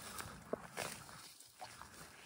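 Faint rustling with a few light, short crunches in the first second, typical of steps through dry grass and brush on a trail.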